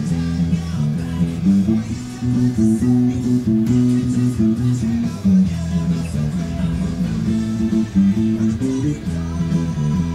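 Electric bass guitar playing a driving rock bass line, its notes changing every fraction of a second, along with a recorded rock band track with drums and guitar.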